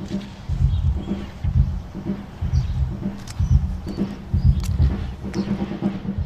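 A drum kit being played indoors, heard muffled from outside the house. Only the low thuds of the drums come through, in a busy run of beats, with a few faint bird chirps above.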